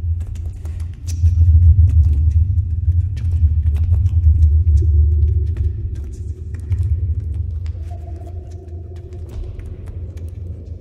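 A deep, steady rumbling drone, loudest from about one to five seconds in, with a held higher note joining about halfway through.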